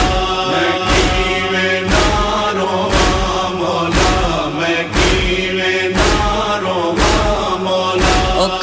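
A chorus of male voices chanting a sustained noha refrain, over deep thumps of matam (chest-beating) about once a second that keep the beat.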